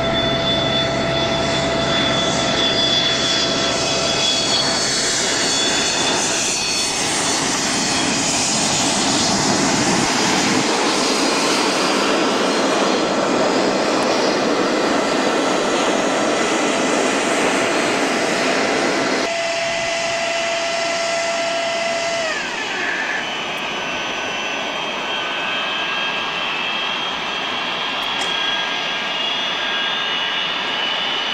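Rear-engined McDonnell Douglas DC-9/MD-80-family jet's Pratt & Whitney JT8D turbofans on landing: a steady whine on final approach, then a loud rushing roar building as it touches down and runs its thrust reversers. About two-thirds of the way through the roar drops and the engine whine glides down as the reversers come off and the engines spool back to idle.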